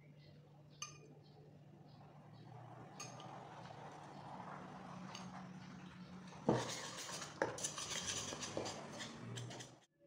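Metal spoon stirring flour and hot water into a tangzhong paste in a ceramic bowl, scraping and clinking against the bowl. The stirring is faint at first and turns into a run of sharper clinks and scrapes about six and a half seconds in.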